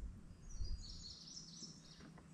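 A bird calling faintly with a run of quick, high chirps, starting about half a second in, over a low rumble of wind or handling noise.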